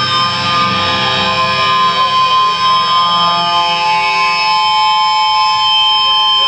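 Electric guitar feedback from the amplifiers: several steady, high, ringing tones held without a break. A lower tone comes in about halfway through.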